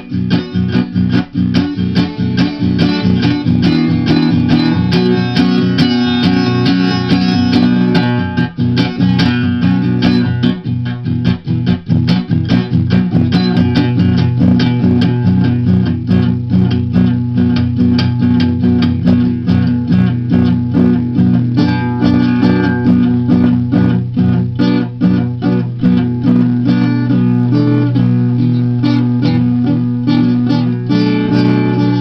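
Instrumental music: plucked guitar playing a steady run of notes over sustained low notes.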